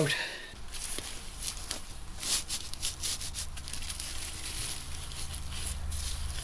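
Hands working loose potting soil around a transplanted Swiss chard plant in a raised bed: scattered soft crackles and rustles of soil and leaves, over a low steady rumble.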